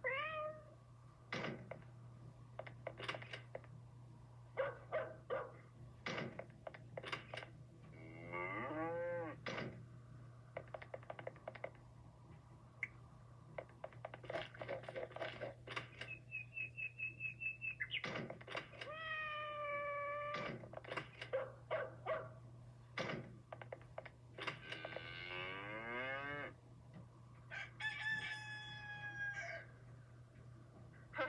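Cartoon soundtrack of a string of animal calls, cat-like meows among them, with a fast high trill about halfway, separated by sharp clicks and knocks. A steady low hum runs under it.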